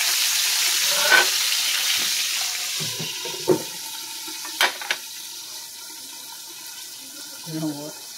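Whole fish frying in oil in a skillet, the sizzle loud at first and dying away. A metal click comes about a second in, and a sharp clack comes about four and a half seconds in as a glass lid goes on the pan, after which the frying is muffled and faint. A brief voice near the end.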